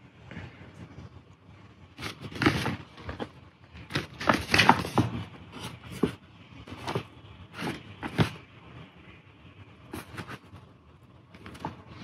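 Hands handling and turning a cardboard product box: irregular rubbing and scraping noises, with a busier patch about four to five seconds in.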